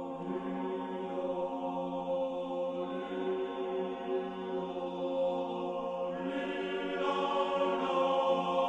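Men's choir singing long, sustained chords that shift slowly, swelling louder and brighter about six to seven seconds in.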